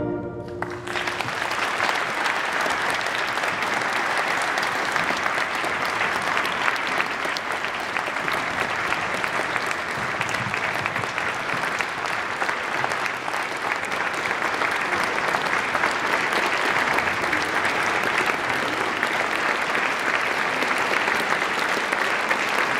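Audience applauding in a large church: steady, sustained clapping that takes over as the last chord of the choir and brass band dies away about a second in.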